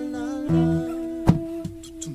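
Music: a voice humming held notes over acoustic guitar, with a strum about a second and a quarter in.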